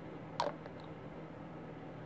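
A single light plastic click, followed quickly by two much fainter ticks, as small plastic model-kit parts are handled.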